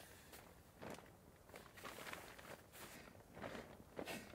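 Faint, irregular rustling and crunching of a person shifting and moving about, a few soft strokes a second.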